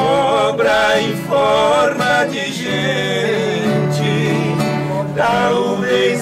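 Men singing a slow sertanejo country ballad in Portuguese, with held, wavering notes, accompanied by two acoustic guitars.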